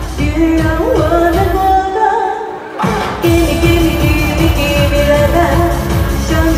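A woman singing an Asian pop song into a microphone over a backing track with a steady dance beat. The beat and bass drop out about two seconds in and come back about a second later.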